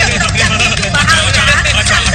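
Excited, high-pitched voices shouting over a steady background music track.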